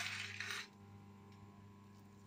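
Faint hiss from salt heating in a steel wok, lasting about half a second. After that it is near silence with a steady low hum.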